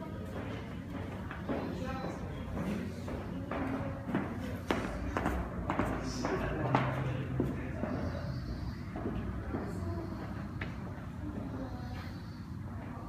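Background chatter of people talking indistinctly in a large room, with music playing and occasional knocks.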